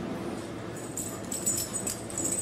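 A small dog whining, with faint short clicks in the second half as a dog rushes in.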